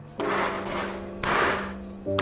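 A round metal cake tin full of cheesecake batter knocked down twice on the work surface, about a second apart, to knock the air bubbles out of the batter. Background music plays underneath.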